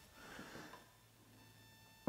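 Near silence: room tone, with a faint soft sound in the first second.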